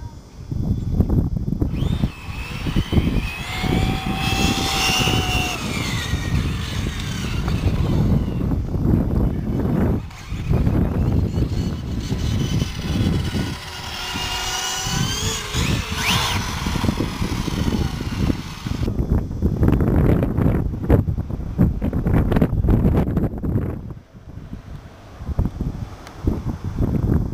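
Radio-controlled cars racing, their motors giving whining pitch sweeps that rise and fall. The whine starts about two seconds in and stops about three-quarters of the way through, over a low wind rumble on the microphone.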